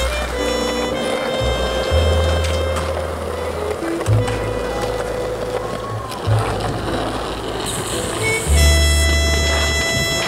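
Music with a deep bass line that changes note every second or two under held higher notes.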